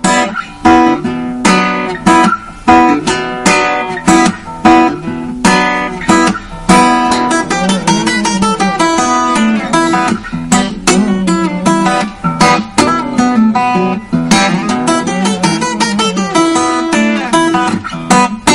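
Solo steel-string acoustic guitar played fingerstyle, with bass notes, chords and melody together and many sharp percussive attacks.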